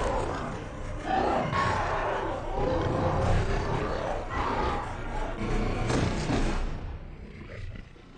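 Film sound mix of a zombie roaring and snarling over dramatic music, in repeated surges that die away near the end.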